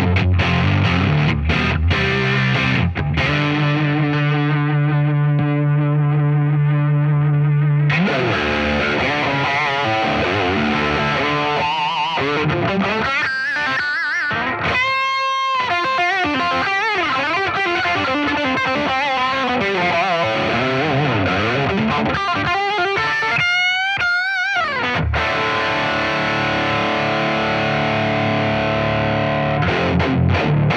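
Distorted electric guitar from a Telecaster-style guitar played through a Positive Grid Bias Head modelling amp into a Marshall 4x12 cabinet. Short chopped chords give way to a long held low note, then a lead line with bent notes and wide vibrato around the middle and again near the end.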